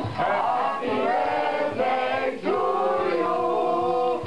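Music with singing: voices holding long, wavering notes that glide between pitches.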